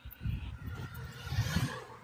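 Low, uneven rumble of wind buffeting a phone's microphone outdoors.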